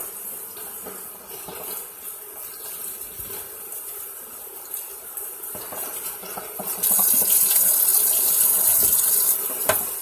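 Kitchen faucet running water onto angel hair pasta in a bowl in a stainless steel sink as the noodles are rinsed. The water gets louder about seven seconds in, and there is a short knock near the end.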